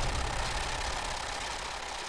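Banknote counting machine running, a rapid fluttering whir of bills feeding through, slowly fading.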